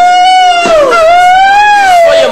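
A man's long, high-pitched drawn-out yell, held as two sustained notes: the first drops away about two-thirds of a second in, and the second swells up and back down.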